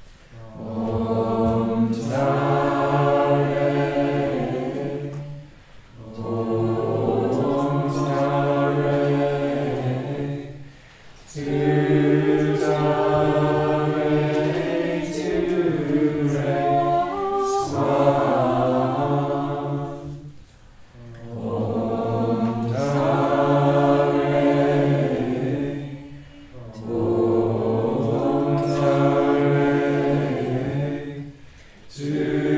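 A group of voices chanting a Buddhist mantra in unison. The chant comes in repeated sustained phrases of about five seconds, each separated by a brief pause for breath.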